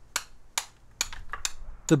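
A string of sharp, irregular clicks or taps, about six or seven in two seconds, over a faint low rumble.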